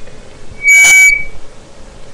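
A faulty microphone giving out one loud, short squealing burst of distortion, about two-thirds of a second long, just past half a second in.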